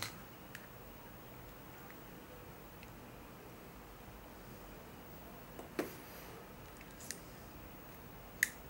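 Faint handling of a plastic phone back cover and stylus: a few light clicks, the clearest about six seconds in, over quiet room tone.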